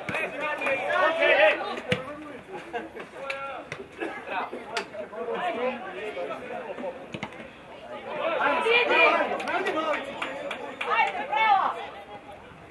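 Voices of players and spectators shouting and calling out at an outdoor football match, loudest about eight to nine and a half seconds in, with a few sharp knocks between the calls.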